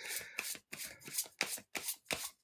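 Tarot cards being shuffled by hand: a run of short papery rasps, about four a second, with brief gaps between them.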